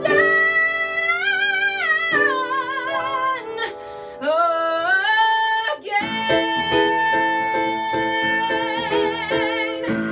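A woman singing with strong vibrato over an instrumental accompaniment, sliding between sustained notes, then holding one long note over repeated chords for the last few seconds.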